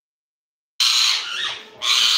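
Rose-ringed parakeet giving two loud, harsh screeches, the first starting about a second in and lasting nearly a second, the second shorter, just after.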